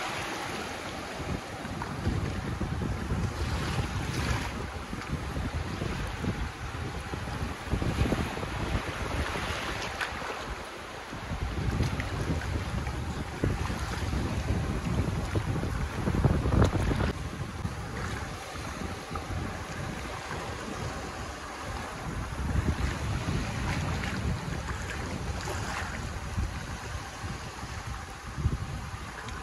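Small waves breaking and washing in over a shallow shore, swelling and easing as each wave comes in, with gusts of wind rumbling on the microphone.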